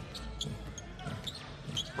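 A basketball being dribbled on an indoor court: a series of short, sharp bounces over low arena background noise.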